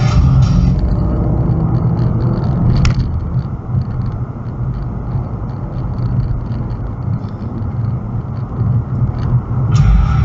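Steady low rumble of road and engine noise inside a car's cabin as it gathers speed on a highway. A single short click about three seconds in.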